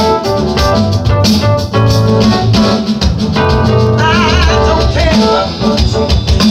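A live band playing: an electronic drum kit keeps a steady beat under keyboard chords, and a high lead line with a wavering vibrato comes in about four seconds in.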